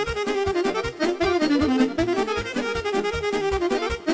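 Accordion-led Romanian folk dance music with a quick, steady beat and no singing.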